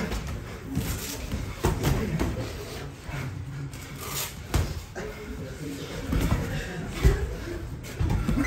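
Kickboxing sparring: irregular thuds of gloved punches and kicks landing on body and shin guards, with feet moving on the mat, the loudest hit about seven seconds in.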